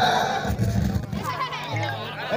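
Stage dance music from a PA sound system, fading, with wavering voices over it.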